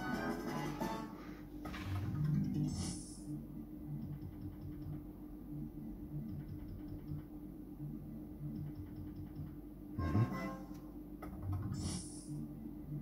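Electronic slot machine game sounds: a short repeating melody low in the background over a steady hum, with brief bright chimes, one of them near the end as a new win lines up on the reels.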